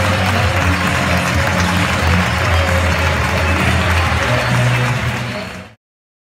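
Audience applauding over music with held low bass notes. The sound cuts off abruptly near the end.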